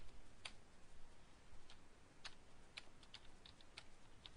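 Faint computer keyboard keystrokes: several separate clicks at an uneven pace, coming closer together in the second half.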